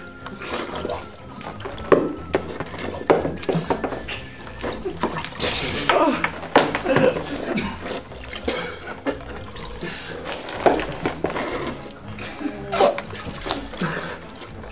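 Water splashing and sloshing in tubs as two people bob for apples with their faces, over background music, with snatches of voices and laughter.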